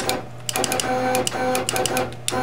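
A CNC machine's axis motors whining steadily as the machine jogs under a jog-button press, starting about half a second in after a sharp click and stopping just before the end. A low steady hum runs underneath.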